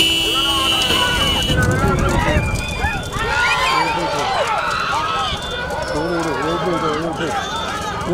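Spectators shouting and yelling in many overlapping voices as a racing bullock cart passes close by. A steady high-pitched tone sounds over them for about the first second and a half.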